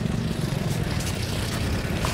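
Motorbike engine running, a steady low drone.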